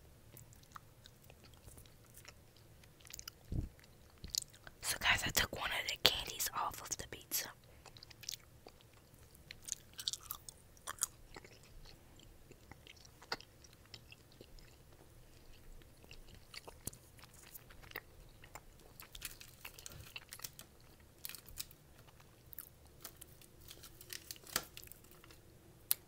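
Gummy candy being chewed close to an earphone microphone: wet mouth clicks and smacks come and go, with a louder stretch about five to seven seconds in.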